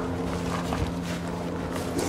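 Outdoor ambience of a steady low mechanical hum, as from a running engine, under wind noise on the microphone.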